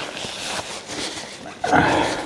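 A man wiping his mouth and nose with a paper napkin held in both hands: a soft rustling hiss, then a loud, rough rasp of breath near the end.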